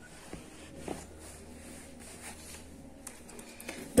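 Quiet room with a low steady hum and faint handling sounds: soft rustles and light knocks as a ruler and tailor's chalk are worked over woollen cloth, then a few small clicks near the end.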